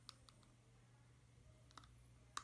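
Faint clicks of a computer mouse button: two close together just after the start and one more near the end, over a low steady hum.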